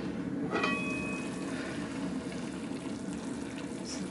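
Curry goat simmering in a large aluminium stockpot, a steady bubbling hiss. A short metallic ring sounds about half a second in as the lid is gripped and moved.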